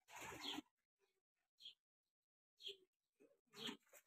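Near silence broken by a short rustle at the start and a few faint, brief calls from pigeons.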